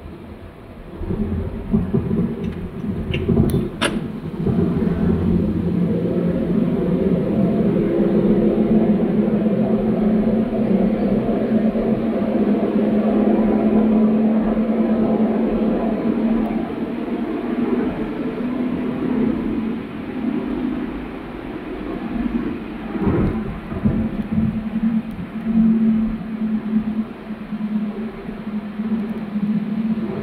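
Car engine and road noise heard from inside the cabin while driving: a steady low drone that grows louder about a second in and holds. Two sharp clicks come about three to four seconds in.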